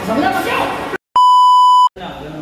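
A voice for about the first second, cut off by a moment of silence, then a loud, steady, single-pitch electronic bleep lasting under a second that stops abruptly.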